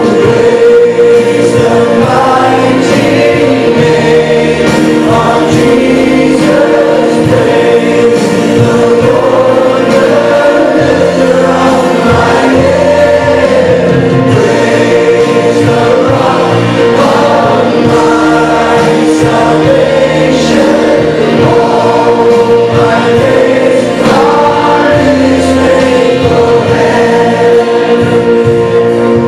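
Christian worship song playing loudly and steadily: a group of voices singing praise lyrics over a sustained accompaniment.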